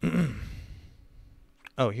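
A man's heavy voiced sigh into a close microphone: a sudden breath with a low, slightly falling pitch that fades away over about a second. Speech starts near the end.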